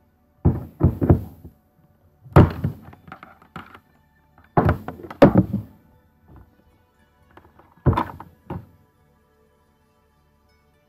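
Plastic microscope parts and stand being handled and set down on a tabletop: a series of sharp knocks and thuds in four clusters, with quiet gaps between them.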